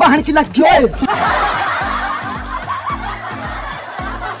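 A short burst of laughter, then many voices laughing together, over background music with a repeating bass beat.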